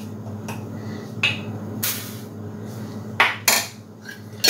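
Metal measuring cup scooping sugar and knocking against the jar and a plastic mixing bowl: a few light clinks, then two louder knocks near the end, over a steady low hum.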